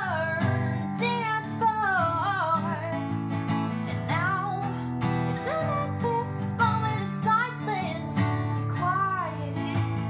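A woman singing solo, accompanying herself on a strummed acoustic guitar.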